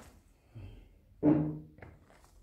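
Trail shoes with lugged rubber soles stepping on a wooden parquet floor: a click and a soft thud, then a heavier footfall about a second in that rings low and drum-like in the boards for a moment.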